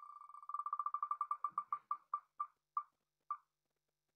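A web name-picker wheel's tick sound effect, one tick for each name passing the pointer. The ticks start in a rapid run and slow steadily to about half a second apart as the wheel coasts to a stop.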